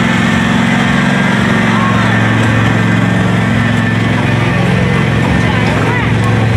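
Small engine of a trackless kiddie train ride running steadily at low speed, a constant hum, with faint children's voices above it.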